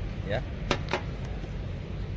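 Two short sharp clicks close together about three-quarters of a second and a second in, then a fainter third, over a steady low rumble.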